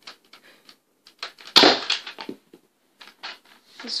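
A Nerf Mega blaster firing a mega dart: one sharp shot about a second and a half in, followed by a few light clicks and knocks.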